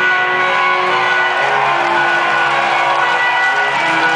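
Live amplified electric guitar playing ringing, sustained chords as an instrumental passage before the vocals, moving to a new chord about one and a half seconds in and again near the end.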